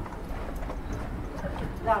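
Footsteps of several people walking on a stone-paved path, a string of light, irregular clicks over a low rumble.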